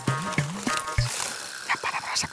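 Background music: a low bass line under sustained notes, with a steady beat of sharp strikes.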